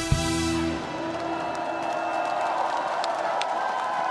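A live trot band ends its song on a final chord with drum hits, cut off under a second in, and then the audience cheers and claps steadily.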